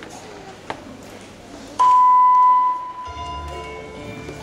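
A loud, steady electronic beep lasting about a second, then the music for a rhythmic gymnastics hoop routine starts about three seconds in.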